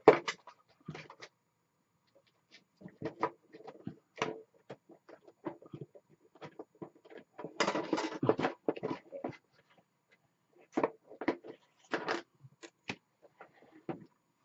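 Desk items being handled while a steel ruler is fetched and laid on a sheet of paper: scattered short knocks, clicks and rustles, busiest for about a second around the middle.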